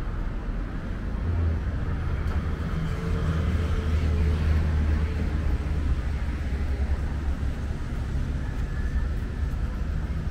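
Steady low rumble of city road traffic, growing stronger for a few seconds in the middle before easing back.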